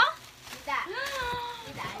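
A high-pitched voice making one drawn-out vocal sound that glides in pitch, with faint rustling of clear plastic air-filled packaging bags being handled.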